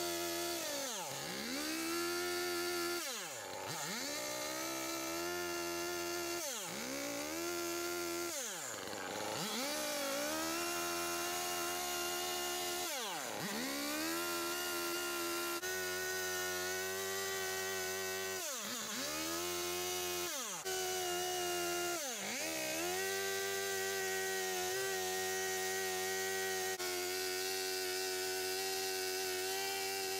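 Small two-stroke Stihl MS 170 chainsaw, running an aftermarket replacement engine, carving yellow pine. Its engine pitch drops sharply and climbs back again and again through the first two-thirds, then holds steady near the end.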